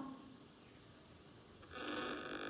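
A laugh trails off at the very start, followed by a quiet stretch of room hiss heard over a video call. Near the end a voice begins a steady, held hesitation sound.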